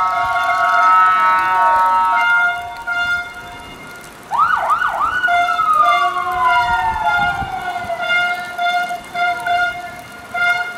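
Police vehicle siren: a loud held horn-like tone for the first couple of seconds, then about four seconds in three quick whoops and a long wail falling slowly in pitch, with a steady tone returning near the end.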